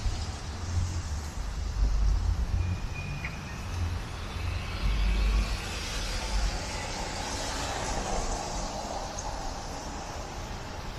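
Outdoor street noise with a vehicle passing, its sound swelling and fading in the middle, and wind gusting in low rumbles on the microphone.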